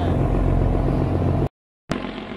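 A boat's engine running with a steady low hum. About one and a half seconds in, the sound cuts out abruptly to brief silence, and a quieter, noisier engine rumble starts up just before the end.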